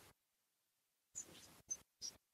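Near silence on a gated video-call audio line, broken by two brief faint noise bursts a little past a second in.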